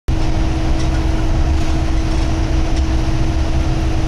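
Forest River FR3 30DS motorhome heard from inside its cab while driving: a steady low rumble of engine and road noise with a constant hum above it.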